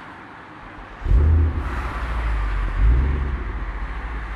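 Car sound effect: a steady rushing road noise, joined about a second in by a deep engine rumble that swells twice, as if revving.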